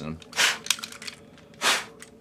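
Two short puffs of breath blown onto a plastic and die-cast toy figure to clear dust out of it, with a light click of the toy between them.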